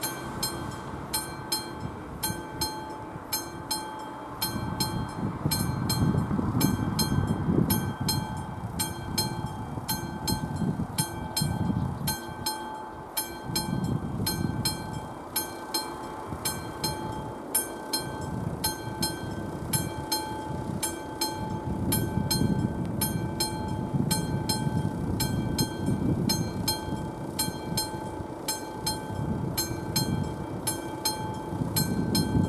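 Electric bell of an AŽD 71 level-crossing signal ringing in a steady run of strikes, a few a second. The crossing is active, warning of an approaching train. Road vehicles rumble past over the crossing.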